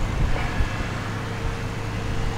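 Steady low outdoor background rumble with a faint steady hum and irregular low buffeting.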